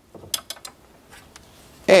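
A long metal tool pushing a wad of paper through a bike fork's lower leg to clean it: a quick run of short scrapes and clicks in the first half second or so, then a few fainter ones.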